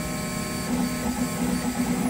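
Large DIY 3D printer running a print: its stepper motors whine in short tones that change pitch with each move of the print head.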